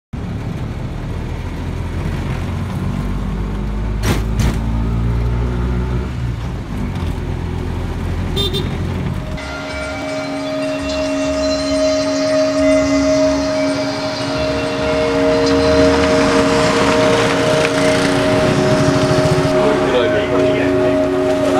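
An auto-rickshaw's engine runs through a ride in traffic, with a couple of sharp knocks and a brief horn-like sound. About nine seconds in, the sound switches to a few long, steady held tones over a hiss, which lasts to the end.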